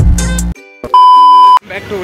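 Loud music with a heavy beat cuts off abruptly about half a second in. About a second in, a single loud, steady electronic beep sounds for just over half a second: a pure high tone added in editing. A man's voice starts near the end.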